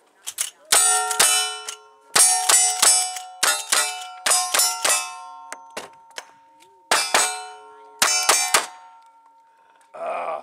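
A rapid string of gunshots, mostly two to three a second, each followed by the ringing of struck steel targets. Short pauses break up the strings, and the last shots come about eight and a half seconds in, leaving a fading ring.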